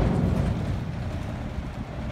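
A steady low rumble with no distinct event, easing slightly, just after a heavy knock.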